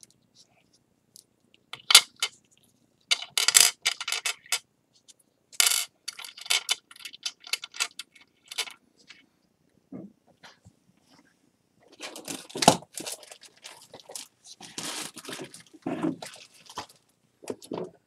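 Shards of a broken ceramic bowl clinking and scraping as they are handled and set down: many light, sharp clicks in two busy stretches with a short lull in the middle.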